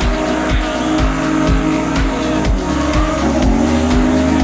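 Music with a steady beat, about two kicks a second, laid over two drift cars sliding together: engines running hard and tyres squealing.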